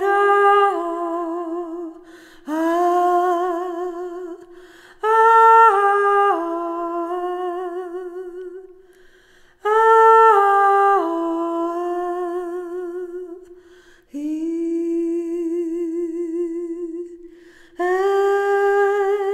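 A woman's unaccompanied voice singing a slow wordless melody in separate phrases of a few seconds each, about five in all. Each phrase steps between a few notes and settles on a long held note with a gentle vibrato, with short breaths between them.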